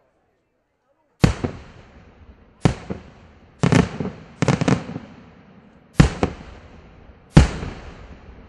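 Aerial firework shells bursting. Starting about a second in, there are about six sharp bangs, some in quick pairs, each followed by a decaying echo.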